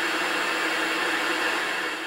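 Television static: a steady, even hiss of white noise that cuts in suddenly and eases off near the end.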